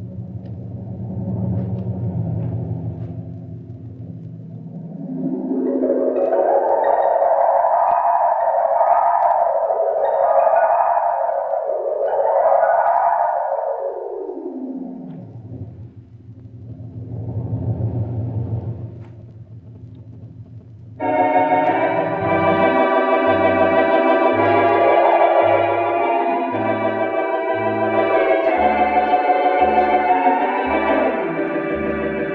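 Artisan electronic theatre organ playing a storm-and-wind effect: swelling sweeps that rise and fall like gusts of wind. About two-thirds of the way through, full organ comes in suddenly with sustained chords over a pedal bass.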